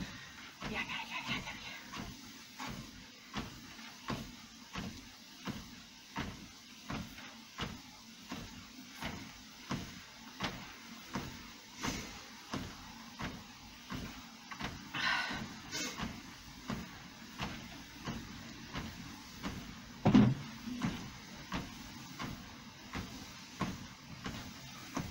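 Steady footfalls on a Fitnord treadmill belt, about two a second, over the hum of the running machine. A heavier thump comes about twenty seconds in.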